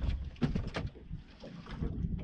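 Wind and water noise around a small open fishing boat at sea, a low rumble on the microphone, with a few short knocks in the first second.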